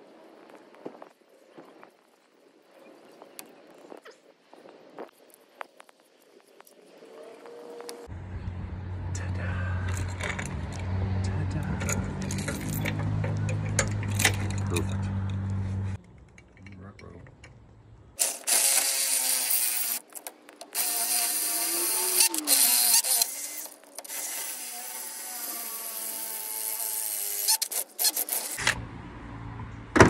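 Cordless drill running in stop-start bursts in the second half, its pitch wavering as it works on a steel boat trailer tongue to mount a hand crank winch.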